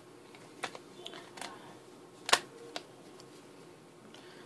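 An iPhone 5 being pressed into a Speck SmartFlex Card case: a few light clicks and handling rubs as the phone's edges seat in the case, the sharpest click a little past the middle.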